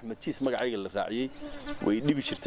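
A man talking in conversation.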